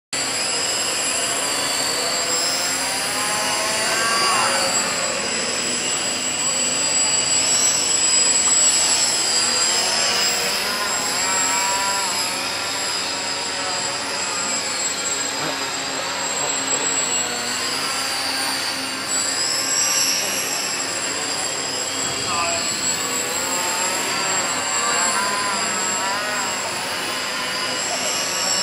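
High-pitched whine of the small electric motors and propellers of radio-controlled blimps, several thin tones held steady and now and then swelling and bending in pitch as the throttle changes.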